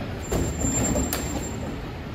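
Volvo garbage truck with a Mazzocchia rear-loader body running at idle with a steady low rumble, while cardboard is thrown into its rear hopper with a couple of knocks. A thin high squeal sounds for about a second and a half.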